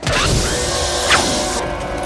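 Film fight-scene soundtrack: music under a loud, dense hissing noise with rising and falling screeches. It starts suddenly, and the hiss cuts off about one and a half seconds in.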